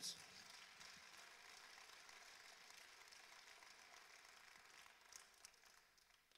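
Faint applause from a congregation, an even patter of clapping that gradually dies away, with a few last claps near the end.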